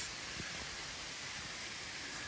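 Steady rush of a waterfall running heavily after recent rain, heard in the background.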